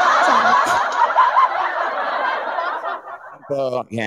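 Many voices laughing at once, a dense loud burst that cuts off about three seconds in; a man's voice starts speaking just before the end.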